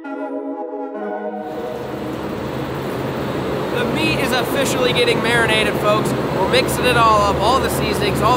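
Soft background music with held organ-like chords cuts off about a second and a half in, giving way to the loud, steady hum and clatter of food-processing machinery on a meat-plant floor, with voices and clicks over it.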